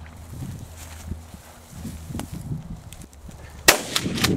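A single loud shotgun shot near the end, fired at a flushed pheasant that is hit. Before it there are only soft scuffing sounds.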